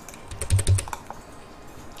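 Computer keyboard keys clicking: a quick run of several keystrokes in the first second, a couple of them with a dull thud, then quiet.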